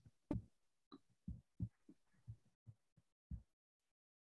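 Near silence broken by a string of faint, short, low thumps, about two or three a second, which stop shortly before the end.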